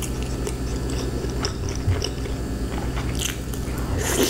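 Close-miked chewing of a forkful of coleslaw, the raw cabbage crunching with scattered wet mouth clicks over a steady low hum.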